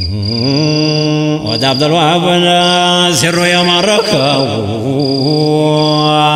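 Male voice chanting a menzuma, an Ethiopian Islamic devotional song, in long held notes with wavering, melismatic ornaments and brief breaks between phrases.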